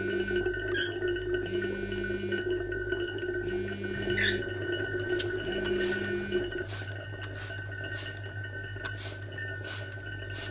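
Smartphone vibrating with an incoming call: a low buzz about a second long, repeating every two seconds, stopping about six and a half seconds in, over a steady hum.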